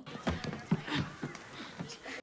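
Irregular light knocks and rattles inside a school bus, part of a film soundtrack.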